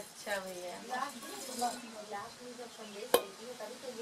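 Jaggery-and-Rhizobium culture solution poured from a metal vessel into a clay pot of green gram seeds, a brief light pour over the first second or two, then a single sharp knock about three seconds in. Faint voices in the background.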